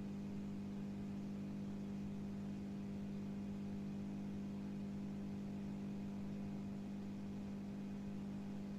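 Steady low electrical hum holding one pitch, with a faint hiss and no change throughout.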